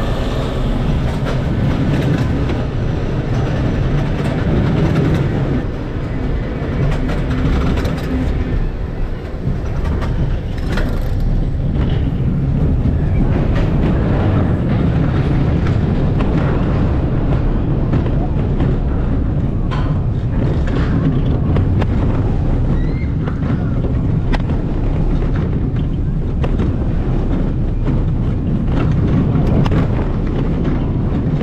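Steel roller coaster train running along its track, heard from on board: a steady low rumble of the wheels on the rails with wind rushing past, and a few short clatters along the way.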